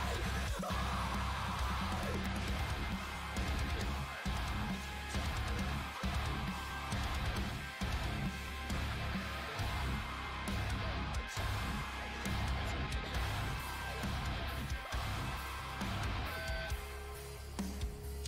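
Heavy rock song with electric guitar, dense and steady, thinning out near the end.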